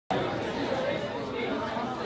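Indistinct chatter of several voices, too muddled for any words to be made out, starting abruptly just after the beginning.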